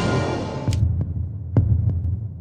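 News segment title sting: a low, throbbing, heartbeat-like pulse with several sharp hits spread over it. A bright, noisy wash cuts off about three-quarters of a second in.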